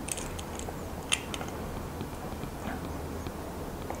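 Case back opener tool gripping and turning a watch's screw-on back cover tight: faint rubbing and handling with a few small clicks, the sharpest about a second in.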